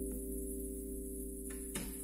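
A jazz track played back through a Devialet Phantom wireless speaker and heard in the room: a few held notes slowly fading, with a soft tap near the end.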